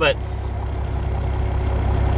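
Semi truck's diesel engine idling, heard from inside the cab as a steady low rumble with a faint even hum.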